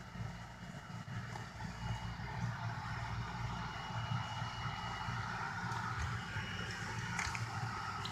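A steady low background hum with faint high tones, and one faint click near the end.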